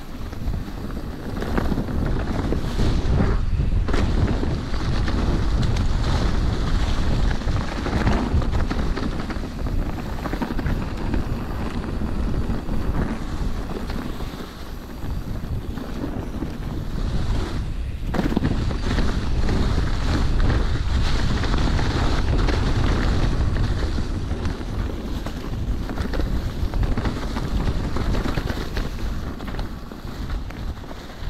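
Wind buffeting the camera microphone during a mountain-bike descent, with the Orbea Occam's tyres rolling over dry fallen leaves and a few knocks as the bike hits bumps.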